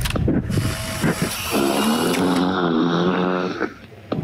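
A short call at the start, then a boy's low, drawn-out groan with a rasping edge, about two seconds long, beginning about a second and a half in.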